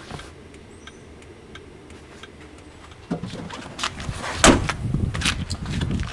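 Geo Metro car door being opened and shut: quiet for about three seconds, then rustling and movement, a sharp thud of the door closing about four and a half seconds in, and another knock about a second later.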